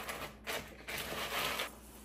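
Cereal being stirred with a spatula in a plastic bowl: crunchy rustling and scraping in two stretches, the second and longer one stopping shortly before the end.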